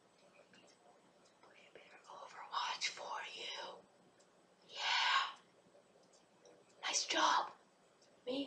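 A boy whispering behind a cupped hand, in three breathy bursts with short pauses between them.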